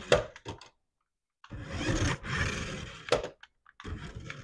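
Toy remote-control Cybertruck's small electric drive motor and gearbox whirring as it drives across a hard floor, in short stop-start bursts with a few sharp clicks.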